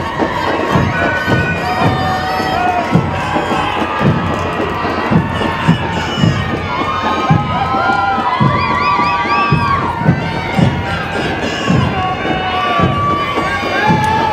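Crowd of spectators cheering, shouting and whooping throughout, with repeated low thumps underneath.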